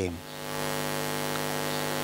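Steady electrical hum with many overtones over a background hiss, from the sound system or recording chain. It swells in about half a second after the voice stops and holds level.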